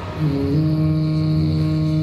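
A low sustained hummed 'mmm' note in the dance music track, starting a fraction of a second in and held steady, with no drums under it.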